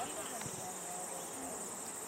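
Steady high-pitched chirring of insects in dry grass, running unbroken.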